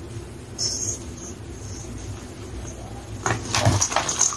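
Hands squeezing and crumbling a pressed ball of gym chalk in powdered chalk. A soft hiss comes about half a second in, then a louder burst of crunching near the end as the ball breaks apart.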